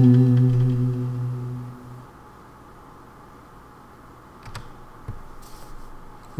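Acoustic guitar's last notes ringing out and fading away over about two seconds, leaving quiet room tone with a few faint clicks near the end.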